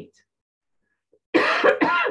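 About a second of near silence, then a woman coughs twice in quick succession.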